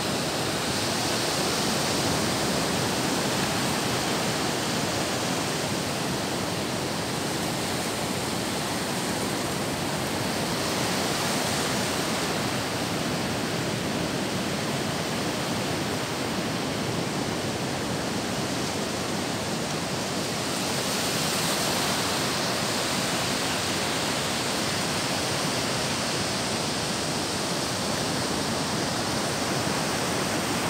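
Steady rushing of surf breaking on a beach, swelling a little about every ten seconds.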